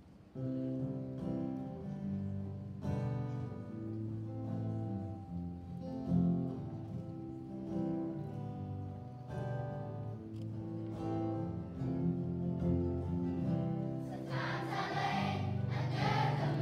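Acoustic guitars start strumming a song intro suddenly about half a second in and play on in a regular rhythm; a children's choir comes in singing about two seconds before the end.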